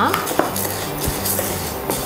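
A wooden spatula stirring white sorghum grains as they dry-roast in a nonstick frying pan: the grains rattle and scrape against the pan, with a few sharp clicks. Background music plays underneath.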